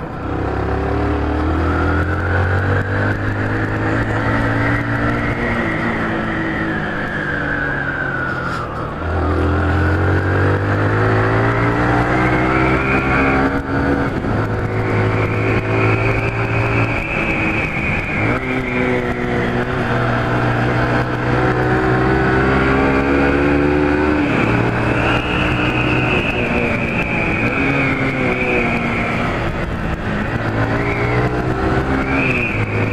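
Honda CG 150 Fan motorcycle's single-cylinder four-stroke engine running under way, its pitch rising and falling several times as the bike accelerates and eases off.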